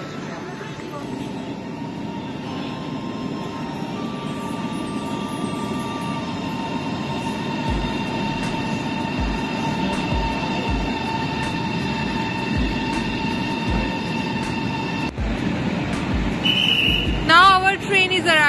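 Chinese high-speed train moving along the platform track: a steady rumble with a high, steady whine held over it. In the second half, low thumps come about once a second.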